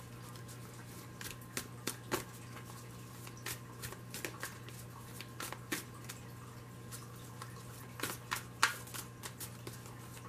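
Tarot cards being shuffled by hand: soft, irregular card clicks and riffles, a few louder ones near the end, over a steady low hum.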